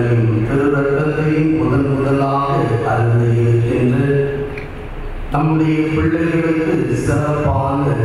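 A Catholic priest chanting a liturgical prayer into a microphone, holding long notes on a nearly steady pitch, with a short pause for breath a little past the middle.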